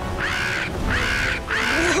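Animated winged alien dinosaur creature calling three times in quick succession, each call about half a second long and rising then falling in pitch.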